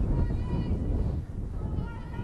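Wind buffeting the microphone: a loud, low rumble that eases after about a second. Faint high voices call out from the field over it.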